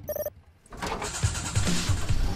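A brief electronic beep, then a car engine being cranked over by its starter, with low pulses about five times a second.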